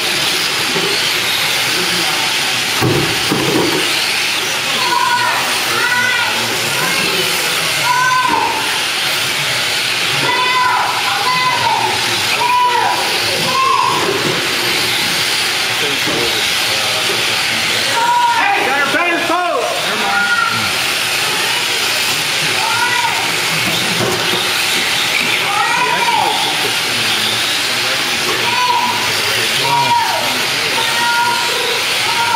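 Several electric Tamiya M-03 mini RC cars racing on carpet, their motors and gears whining in repeated rising and falling glides as they accelerate and brake through the turns, over a steady high hiss.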